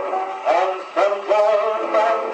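Victrola VV 8-4 phonograph playing an old record of a song. The sound is thin, with no bass, and new notes come in about half a second and a second in.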